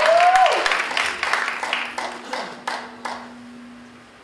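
Audience applauding, the clapping thinning out to scattered claps and fading away over the last couple of seconds.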